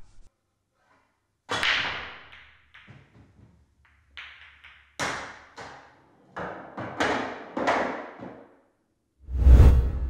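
A pool break shot: about a second and a half in the cue ball hits the rack hard. A run of sharp clacks follows over the next several seconds as the balls collide and strike the cushions. Near the end a deep whoosh sounds.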